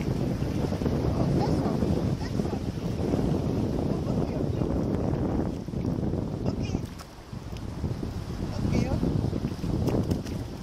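Wind buffeting the microphone over the wash of shallow surf, with a brief lull about seven seconds in.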